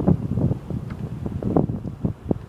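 Wind buffeting the microphone in uneven gusts, a loud low rumble.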